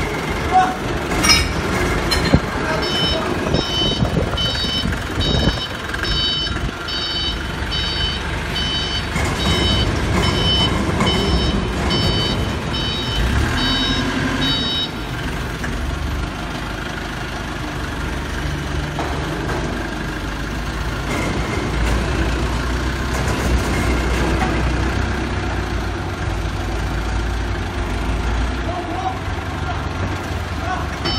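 A vehicle's reversing alarm beeping at about three beeps every two seconds over a running engine. The beeping starts a few seconds in and stops about halfway, and the engine rumble grows heavier in the second half.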